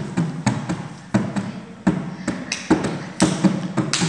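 Hand strokes on a tambor alegre, a Colombian rope-tensioned skin drum, about two hits a second at a slightly uneven pace: a beginner playing the basic cumbia march pattern.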